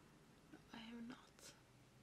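Near silence: quiet room tone, with one brief, faint murmured word about a second in.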